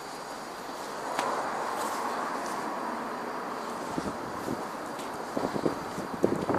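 Outdoor city street noise, with a broad swell of sound about a second in that fades by the middle, then a few short soft knocks near the end.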